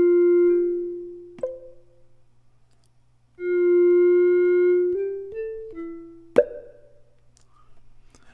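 Synthesized tone of the Orphion iPad instrument app played on its F4 pad. A held note fades out about a second and a half in, ending with a sharp tap. A second held note comes in about three and a half seconds in, followed by three quick short notes and another sharp percussive tap.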